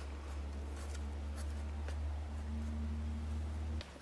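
Hands digging and pressing into potting compost in a plastic nursery pot, a few faint scratches and rustles. Under them is a steady low hum, the loudest sound, which cuts off suddenly near the end.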